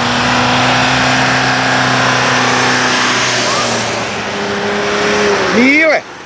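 Cars and vans driving past on a road: a steady engine hum under a broad rush of tyre and road noise, with a brief rising pitched sound just before the end.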